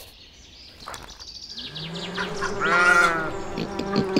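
Animal-call sound effects: a quick run of high bird chirps, then a long bleating call that rises and falls over a lower drawn-out call, growing louder. Plucked-guitar music starts at the very end.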